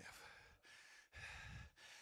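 A man's faint, heavy breathing into a handheld microphone: a long breathy exhale, then a low puff of breath against the mic about a second in.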